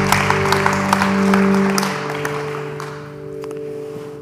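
Congregation applauding over the worship band's last held chord at the end of a song; the clapping thins out after about two seconds and the chord fades away.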